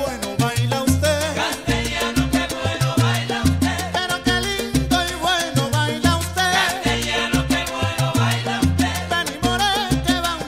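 Salsa music: a recorded salsa song with a bass line in short repeated notes under dense percussion and melodic parts.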